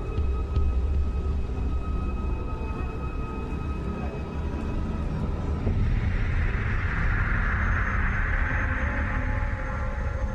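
Ominous horror-film underscore: a deep, steady low drone with thin high tones held over it, joined about six seconds in by a swelling hiss that fades out near the end.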